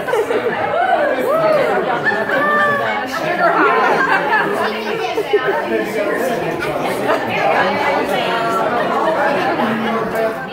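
Several people talking at once: steady, overlapping conversational chatter in a room, with no single voice standing out.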